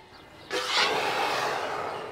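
An elephant blowing air out through its trunk: a loud, breathy rush starting about half a second in and lasting about a second and a half.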